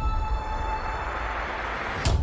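Logo-intro sound effect: a hissing riser swelling over a deep low rumble, building toward a hit at the very end, while a faint steady high tone fades out in the first second.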